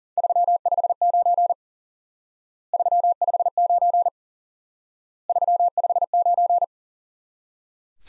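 Morse code sent as a single-pitch keyed tone at 40 words per minute: the number 359 sent three times, each group lasting about a second and a half with about a second's pause between.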